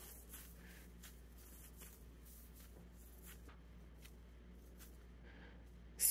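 Near silence, with faint soft rustles at irregular moments as a slice of soft egg white bread is squeezed into a ball in the hands.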